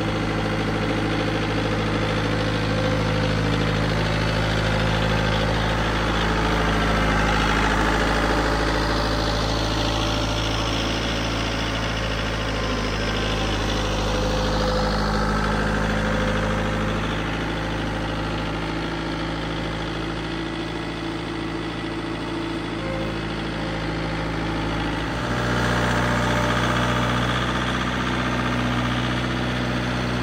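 Bobcat Toolcat 5600's turbo diesel engine running at low revs while the machine manoeuvres, its engine note stepping up about 25 seconds in.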